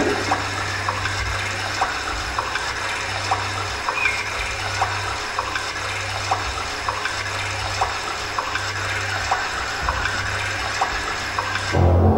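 A steady rushing noise, like running water or static, with a soft tick repeating about twice a second, played as the soundtrack to a dance, over a low hum.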